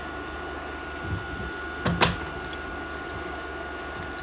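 Handling noise from a circuit board and soldering iron: a single sharp click about two seconds in, over a steady electrical hum.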